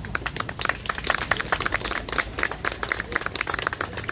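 A small crowd clapping: many separate hand claps, quick and irregular, with individual claps distinct rather than blended into a wash.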